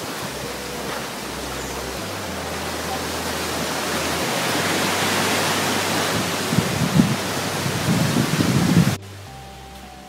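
Wind buffeting a phone's microphone: a loud rushing hiss that builds, with low gusty thumps toward the end. It cuts off abruptly about nine seconds in, leaving quieter background music.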